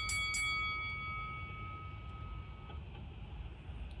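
A single bell-like chime struck once, ringing out and fading away over about three seconds, with a low steady hum underneath.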